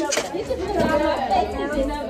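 Several women talking at once: overlapping chatter in a room, with no single clear voice.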